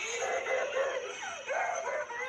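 A young girl crying out and wailing in fright, with a woman's voice near her, played back through a computer's speakers.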